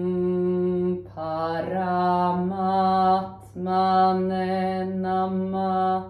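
A woman chanting a mantra in long, held notes, her pitch sliding to a new note about a second in, with short pauses for breath between phrases.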